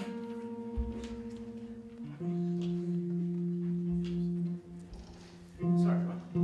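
Electric guitar being tuned: single strings plucked and left to ring. The first held note wavers with an even beat as two strings are matched, then a lower note rings steadily, and a louder note comes near the end, with a few dull bumps from handling.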